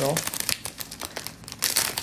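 Crinkling and rustling of packaging and sheets of nail-art water decals being unwrapped and handled by hand, a run of irregular crackles.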